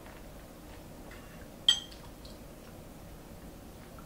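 A metal spoon clinks once, sharply and briefly, against a bowl of fruit about halfway through, with a few faint ticks around it.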